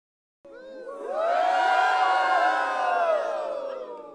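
A crowd of many voices cheering together, starting about half a second in, swelling, then fading out near the end.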